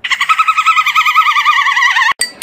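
A loud, high warbling trill that wobbles rapidly in pitch, like an animal mating call. It is held steady for about two seconds and then cuts off abruptly.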